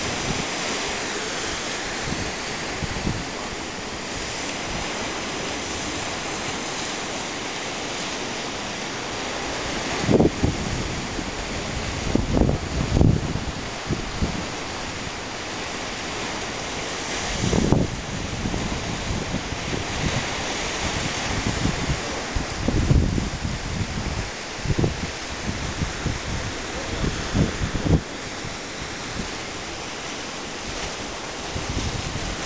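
Ocean surf breaking and churning against a rocky cliff base, a steady rushing wash of white water. From about a third of the way in, wind buffets the microphone in several louder low gusts.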